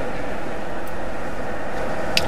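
Steady background noise: an even hiss with a low rumble underneath, holding at one level throughout.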